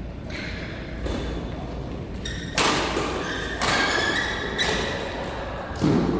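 Badminton rally: rackets striking the shuttlecock five times, about a second apart, the later hits the loudest, with short squeaks between hits.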